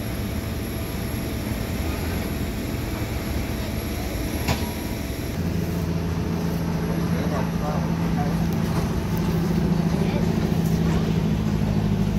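Steady low engine rumble of vehicles or ground machinery on an airport apron. A deeper steady hum joins about five seconds in and grows louder, with a single click just before it.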